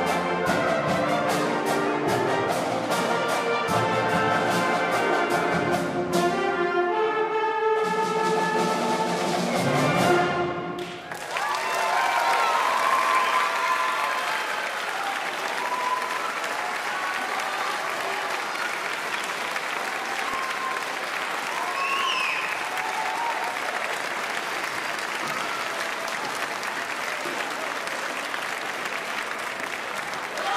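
Middle school concert band, with brass, saxophones and timpani, plays the final bars of a piece with repeated accented strikes and ends on a held chord about eleven seconds in. The audience then applauds steadily.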